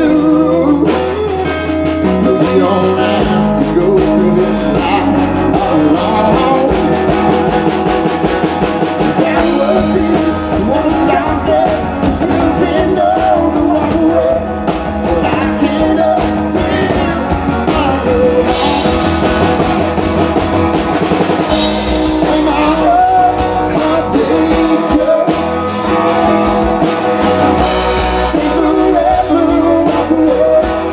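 Live country band playing an original song: acoustic and electric guitars, upright bass and drums under a male lead vocal. The cymbals come through more strongly about twenty seconds in.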